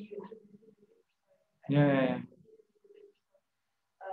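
A person's voice in a room: talk trails off in the first second, then one short, loud, held vocal sound comes about two seconds in.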